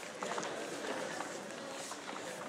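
Indistinct background voices in a gym, with scuffs and a few short squeaks from wrestlers moving on the mat about a quarter second in.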